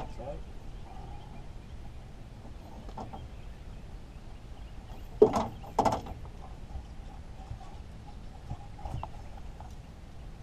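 Two loud, sharp knocks about half a second apart near the middle, with a few fainter clicks around them, as a blue catfish is handled on the boat.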